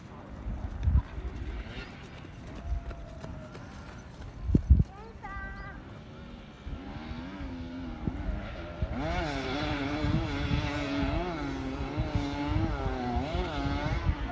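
Dirt bike engines on a steep rocky hill climb, heard from a distance, revving up and down unevenly as the riders fight for grip. The revving grows louder from about halfway. Low thumps from wind or handling hit the microphone near the start.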